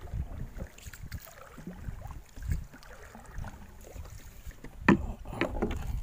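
A wooden paddle dipping and pulling through the water, with repeated dull knocks against the small boat's hull and water sloshing. A louder, sharper knock comes about five seconds in.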